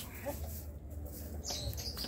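Hens feeding in a coop, giving a few faint, low clucks, with soft rustling in the litter.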